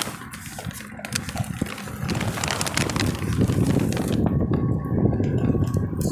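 Strong gusting wind buffeting a phone's microphone while a wheelchair rolls over asphalt, with scattered clicks and knocks. The buffeting grows heavier about two seconds in.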